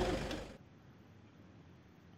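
Steady mechanical running noise with a low rumble, fading out about half a second in and leaving near silence.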